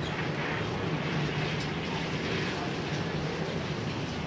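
A steady mechanical hum with an even rushing noise, unchanging in level.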